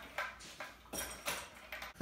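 A few short scrapes and light knocks: a paintbrush working oil onto a plastic concrete-mold insert, and the plastic piece being handled.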